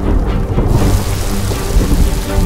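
Film trailer soundtrack: brooding music over a deep rumble, joined under a second in by the steady noise of heavy rain.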